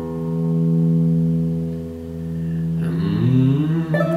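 Electric guitar chord held and ringing, its volume swelling up and fading back. About three seconds in, bent notes come in sliding up and down, from a blues harmonica played into a cupped microphone.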